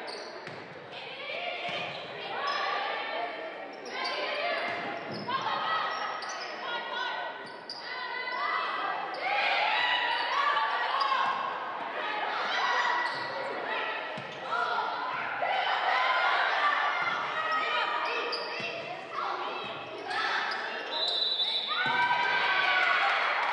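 Indoor volleyball play: ball hits and bounces mixed with indistinct players' calls and spectators' voices, all echoing in a large gymnasium.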